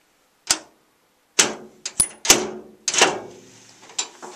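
A series of sharp metallic clicks and clacks, about seven in three seconds, from the lock mechanism of a Sentry electronic gun safe. A coat-hanger wire pushed through the keypad mounting hole is shimming the locking pin while the handle is held tensioned, and the lock gives way, which is the sign of the keypad-mount-hole bypass working.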